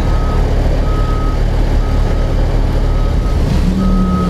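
Snorkel A62JRT articulated boom lift running on its four-cylinder turbocharged Kubota diesel, with its motion alarm beeping about once a second as the boom is operated. A lower steady hum rises in near the end.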